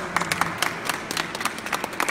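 A crowd applauding, with many hands clapping densely.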